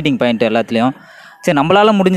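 A rooster crows loudly in one long call that starts about one and a half seconds in, after a man's brief speech and a short lull.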